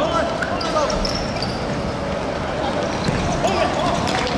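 Football thudding on a hard outdoor court as players chase it, with players' shouts near the start and again near the end, over a steady background din.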